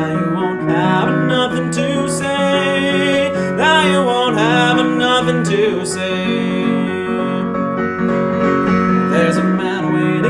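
Piano playing steady chords, with a voice singing short phrases of a folk song over it.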